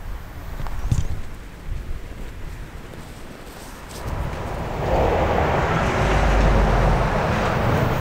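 Outdoor ambience with wind rumbling on the microphone. About halfway through, a broad rushing noise swells up and holds steady.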